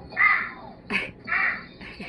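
Harsh cawing calls repeated about once a second, with one sharp click about halfway through.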